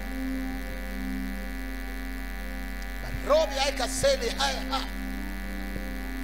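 Steady electrical mains hum and buzz through a sound system, running unchanged throughout. A voice calls out briefly over it just past the middle.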